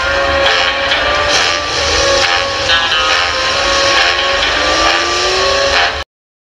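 Film soundtrack music over a car engine running, with a slowly rising tone in the last couple of seconds; the sound cuts off suddenly at the end.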